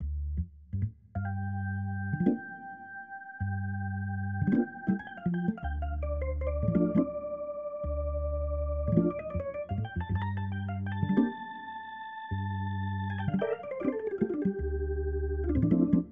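A sampled Hammond organ (8Dio's B2-B3 hybrid, recorded through a real Leslie cabinet) is playing. Repeated low bass notes sound under held chords, with quick runs between the chords.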